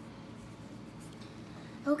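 Quiet room background with faint scratching and rustling as toy dolls are handled and moved on a playset. A voice starts right at the end.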